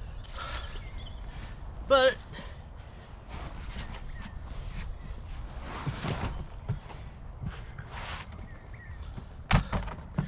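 Hands scuffing and rustling in loose soil and handling an empty plastic nursery pot, in irregular bursts, with a sharp knock near the end.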